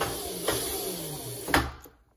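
Razor RSF650 electric mini bike with its rear wheel spinning under throttle, a steady high hiss, then the rear hydraulic disc brake is grabbed: a sharp clunk about one and a half seconds in and the wheel stops almost at once.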